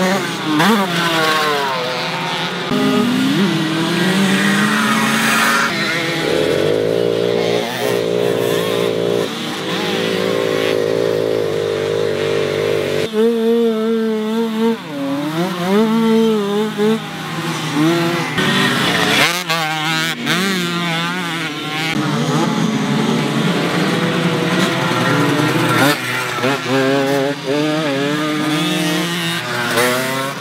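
Small 50 cc Mofa moped engines revving as they ride a dirt track, the pitch repeatedly climbing under throttle and dropping off for the turns. The sound switches abruptly to another bike several times.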